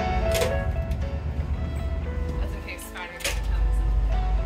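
Steady low rumble of a ferry's engines. The push-bar door latch clacks about a third of a second in, and a second clack comes around three seconds in as the rumble grows louder. Background music plays over it.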